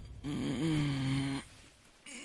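A man snoring once: a drawn-out, droning snore about a second long, starting a moment in.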